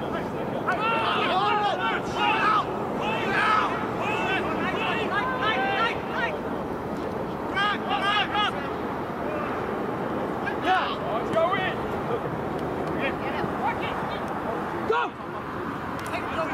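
Rugby players and sideline spectators shouting short, unclear calls during open play, one after another, over a steady outdoor background noise; a brief drop in sound near the end.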